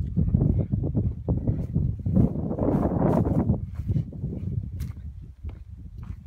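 Wind rumbling and buffeting on the microphone in open country, rough and uneven, louder for a second or so in the middle.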